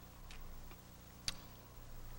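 A quiet pause holding a faint steady low hum, with one sharp click a little over a second in.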